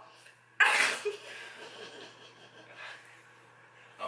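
A woman laughs, starting suddenly about half a second in and trailing off into quiet, breathy laughter.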